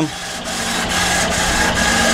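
Steady hum and hiss of an air-cooled Epilog FiberMark Fusion fiber laser marking machine running while it engraves metal 1-2-3 blocks, with a constant low hum and a thin high tone.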